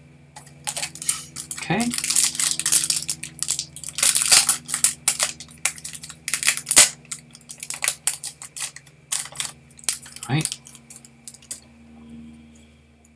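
Trading-card pack wrapper crinkling and tearing open, a dense run of crackles, with cards being handled.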